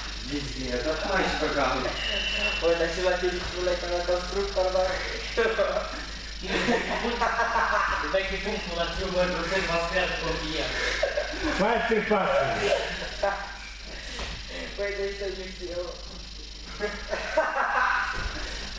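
People's voices talking throughout, the words not made out, over a steady low hum.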